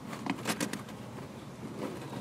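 Faint handling noises: a few short, soft rustles and taps, clustered about half a second in and again near the end, over a low steady background.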